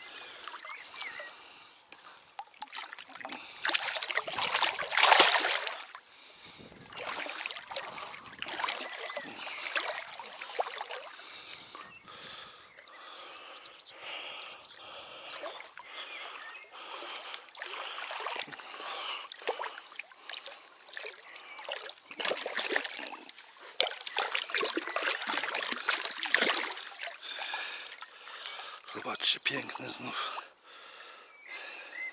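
Shallow pond water splashing and sloshing in irregular bursts as a released sturgeon is let go and swims off at the surface near the bank, with louder stretches about four seconds in and again in the last third.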